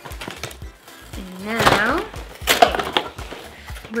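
Cardboard toy box being opened by hand: its flap and tabs pulled free with a series of scrapes and sharp clicks, and a short wordless voice-like sound about a second and a half in.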